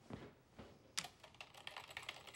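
Typing on a computer keyboard: faint, quick key clicks that start about a second in.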